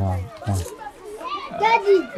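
Voices: a lower-pitched adult voice speaks briefly at the start, then higher-pitched children's voices chatter and call out as they play.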